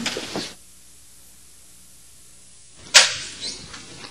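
Low steady hiss, broken about three seconds in by a single sharp crack that dies away quickly, with a few short noisy sounds after it.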